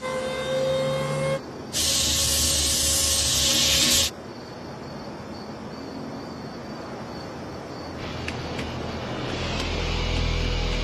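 Cartoon sound effects. A brief swell of steady tones is followed about two seconds in by a loud hiss lasting about two seconds. Then comes a quieter stretch of faint, evenly pulsing chirps as night ambience, with music rising near the end.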